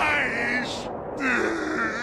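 An old woman's strained, wailing shout of 'Give that back!', dubbed anime voice acting, in two cries with a short break about a second in.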